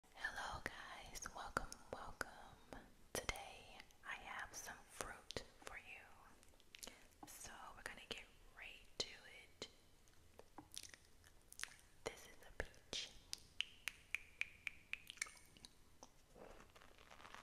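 Soft whispering close to the microphone, broken by many sharp wet mouth clicks. In the last few seconds, a quick run of regular clicks, fitting with chewing fruit.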